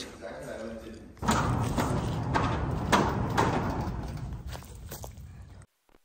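A run of dull thuds and knocks over a low rumbling noise in a large, echoing room. It starts suddenly about a second in and fades out toward the end.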